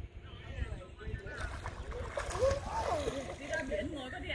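Voices of people talking in the background at a swimming pool, with a steady hiss that comes up about a second and a half in.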